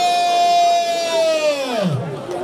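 A voice holding one long, high, drawn-out call that slides steeply down in pitch near the end, in the manner of a ring announcer stretching out a wrestler's introduction.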